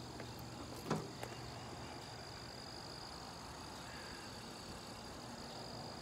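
Insects in dense summer vegetation keep up a steady high-pitched chorus over a low background rumble, with a brief voice-like sound about a second in.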